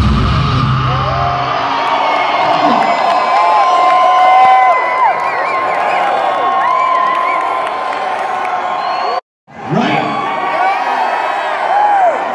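Concert crowd cheering and yelling, many shouts rising and falling in pitch, as the heavy metal song's drums and bass stop about a second and a half in. The sound cuts out completely for a moment about nine seconds in, then the cheering carries on.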